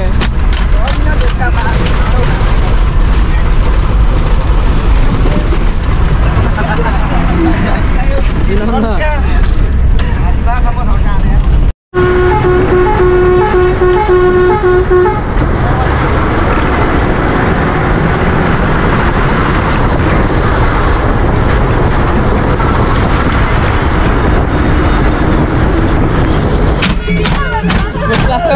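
Bus engine and road noise with passengers' voices inside the cabin. After a cut, a horn sounds as a rapid run of short toots for about three seconds over steady road noise.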